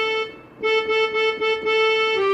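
Electronic keyboard played one-handed, a single-note melody line: a held note that breaks off just before half a second in, then one pitch struck several times in a row.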